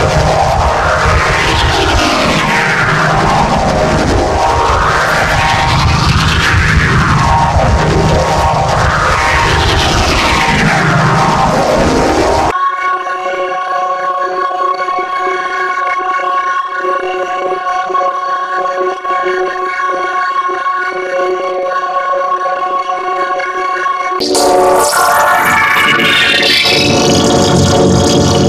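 Electronically warped jingle audio. For about the first twelve seconds its pitch sweeps up and down about every two seconds. It then cuts suddenly to a steady held chord of tones, and a little before the end cuts again to a louder sweep that rises in pitch.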